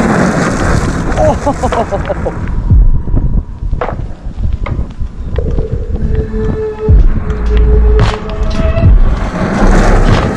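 Large RC car driven hard on loose gravel: its motor revs up and down in pitch over a loud rumble and the crunch of tyres spraying gravel, with background music underneath.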